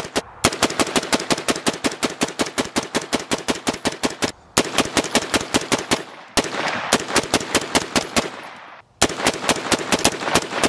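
Suppressed .30-calibre AR-style rifle firing through a HUXWRX HX QD Ti titanium suppressor in rapid, sustained fire, about six or seven shots a second, during a 500-round burn-down. The string is broken by brief pauses, and there is a quieter stretch with few shots in the second half.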